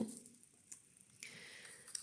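Faint rustle of a glossy cookbook page being turned by hand, starting a little past halfway, after a single faint tick.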